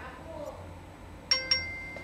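Message-alert chime from an iPod's small speaker as a Ping message arrives: two quick high dings about a fifth of a second apart, the second ringing on.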